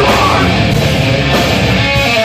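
Live heavy metal band playing loud and steady: distorted electric guitars, bass and drums.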